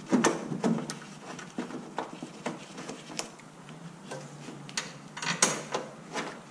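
Irregular light clicks and knocks of a plastic headlight housing being handled into place while its mounting screws are started by hand.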